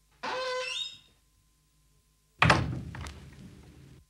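A cottage door creaking open in a single pitched creak, then a loud thud as it shuts, which rings on and fades over the next second and a half.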